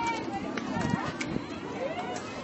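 Overlapping distant voices of players and spectators calling out across the softball field, with a couple of faint clicks.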